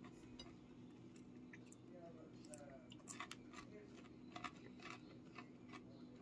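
Near silence with a faint steady hum, broken by scattered faint clicks and crackles, mostly in the second half: quiet chewing of a crunchy breaded fish stick.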